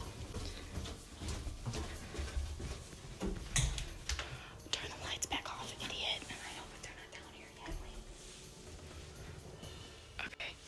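Soft whispering, with footsteps on carpeted stairs and the knocks of a handheld camera being carried.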